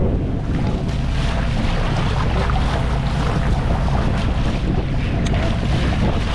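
Sport-fishing boat's engine running steadily under water rushing and splashing along the hull, with wind buffeting the microphone.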